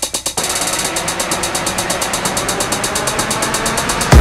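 Bass house track in a build-up: a fast, even drum roll over a dense noise wash that slowly grows louder.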